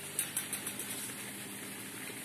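Faint steady low hum of a small running motor, with a few soft rustling ticks in the first half second.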